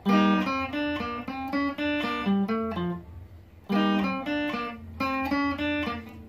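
Electric guitar playing a single-note highlife melody line, picked note by note in two phrases with a short pause about three seconds in.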